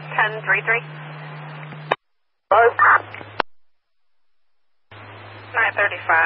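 Police radio dispatch heard through a scanner: three short transmissions of hiss and brief garbled speech. A steady low hum runs under each, and each cuts off with a squelch click, about two seconds in, near the middle and near the end.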